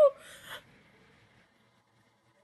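A woman's drawn-out whimpering cry tails off at the start, followed by a short breathy gasp in the first half second.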